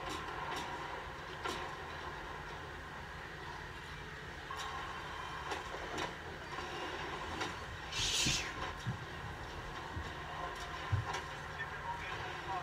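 Steady low room rumble with faint scattered clicks and a short hiss about eight seconds in.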